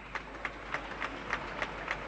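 Scattered applause from deputies: sharp hand claps at a regular pace of about three a second over a low background hum.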